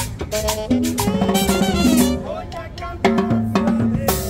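Live Latin dance music from a street band: congas and a drum kit beating under a pitched bass line. The playing thins out briefly past the two-second mark and the full band comes back in about three seconds in.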